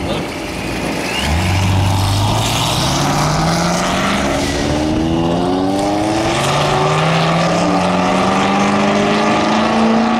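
A supercharged Corvette C7 Z06 V8 and a turbocharged Audi TT RS five-cylinder accelerating at full throttle from a rolling start. The engine note comes on hard about a second in and climbs in pitch, drops back at a gear change around the middle, then climbs again.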